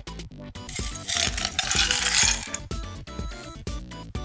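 Ice cubes dropped into a drinking glass, a dense clinking rattle lasting about two seconds, over background music with a steady beat.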